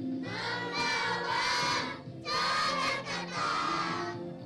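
A children's choir singing a patriotic song in unison, over steady musical accompaniment, with a brief break between phrases about two seconds in.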